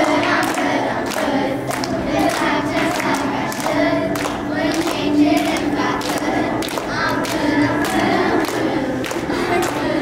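Children's choir of girls singing a song, with a steady beat of sharp strokes about twice a second under the voices.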